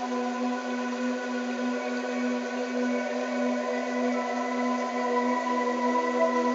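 Electronic brainwave-entrainment tones: a steady low tone pulsing regularly, as a monaural beat and isochronic tone do, with fainter steady higher tones over an even hiss. The sound is constant and unchanging.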